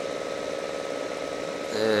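A steady background hum with a faint high, even tone, through a pause in talk; a man's voice comes back with a short "eh" near the end.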